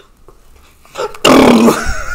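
A changeling's voiced chest rattle: a loud, rough, low rattling hum, like a drawn-out burp, starting about a second in and lasting about a second.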